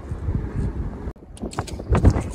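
Wind buffeting the microphone: an uneven low rumble that drops out briefly a little after a second in.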